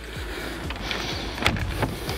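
Wooden shed door pushed shut, its outside latch catching with a sharp click about one and a half seconds in.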